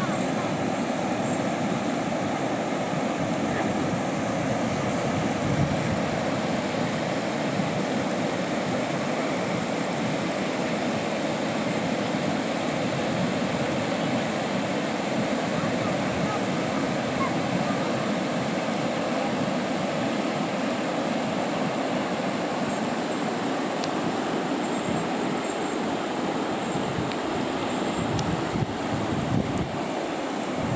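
Whitewater rapids of the Yellowstone River rushing over rocks: a steady, unbroken rush of fast water.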